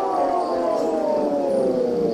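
Psytrance in a passage without drums: a synthesizer tone with several harmonics glides steadily downward in pitch in one long falling sweep.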